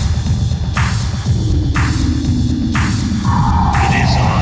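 Experimental electronic house music: a throbbing bass under a noisy hit about once a second. A synth tone comes in a little after a second, and a higher tone joins near the end.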